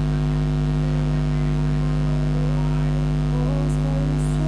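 A steady electrical hum runs throughout, an unchanging buzz with a row of even overtones. Faint music with a wavering melody comes in beneath it from about halfway.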